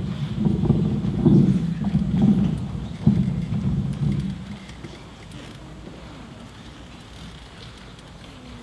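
Microphone handling noise through the PA: low rumbling thumps and rubbing, with a sharp knock about three seconds in, as the microphone is handled at its stand. It stops about four and a half seconds in, leaving quiet hall ambience.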